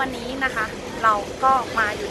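A woman talking, over steady background street traffic noise.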